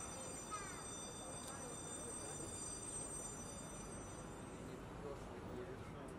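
Quiet outdoor street ambience with faint distant chatter, and a thin, steady high whine that stops about four and a half seconds in.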